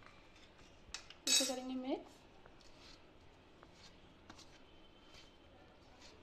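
A metal spoon clicks and clinks against a steel mixing bowl about a second in, with a brief voice sound right after it; the rest is faint scattered ticks and scrapes.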